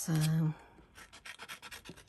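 Small pointed craft scissors snipping through thin card, a quick run of short snips in the second half.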